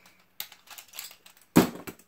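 A few light plastic clicks and knocks, with a sharper knock about one and a half seconds in: Beyblade tops and their launcher being handled.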